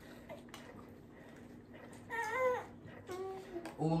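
A baby's short, high-pitched vocal sound about two seconds in, rising then dropping, with a softer little sound about a second later, over quiet room tone.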